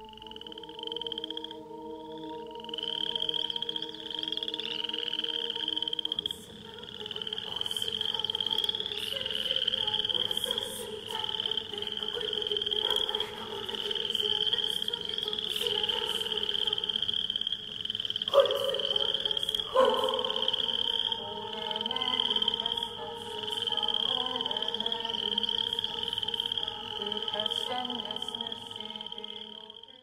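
Frog-like croaking chirps repeating about once a second over held, droning tones.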